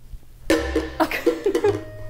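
A woman laughing in short broken bursts, starting about half a second in after a quiet moment.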